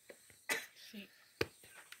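Mostly quiet, with brief faint snatches of people's voices and a short sharp click about one and a half seconds in.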